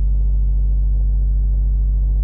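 Loud, steady low electrical hum in the recording, with no other sound over it.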